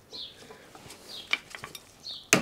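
A few small metallic clicks and ticks as a brake pad retaining spring and slider pin are worked by hand into a rear brake caliper, the sharpest about a second and a half in.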